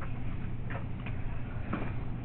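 A steady low hum with a few faint, short ticks scattered through it.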